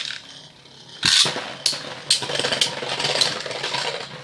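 Metal Fight Beyblade tops spinning in a plastic stadium: a quieter whir, then about a second in a loud clash starts a continuous rattling, clicking scrape of the metal tops hitting and grinding against each other until near the end.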